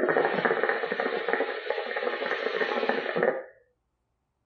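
Hookah water bubbling steadily as a long, hard draw is pulled through the hose, stopping after about three and a half seconds. It is a strong, free-flowing draw through a wide-opening clay bowl under a heat management device.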